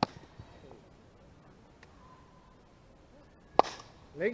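Two sharp knocks of a baseball striking glove or bat: one right at the start and a louder one about three and a half seconds in, with a brief ring after it.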